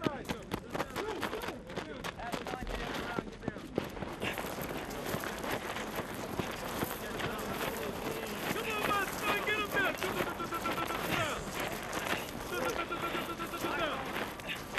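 Gravel crunching and scraping in dense crackling clicks as a Marine runs and then low-crawls across a gravel field. Onlookers laugh and shout in the background, with a long held call near the end.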